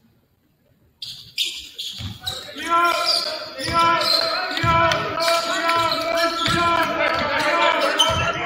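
Basketball bouncing on a hardwood gym floor: a few low thumps, with a held, wavering voice calling over the echoing gym noise. It starts after about a second of near silence.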